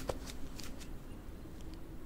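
Rustling and a few light clicks from soldiers moving in armour and cloaks, busiest in the first second, over a low steady background hum.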